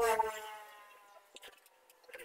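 A single drawn-out, high-pitched bleat-like vocal call that falls slightly in pitch and fades away over about a second.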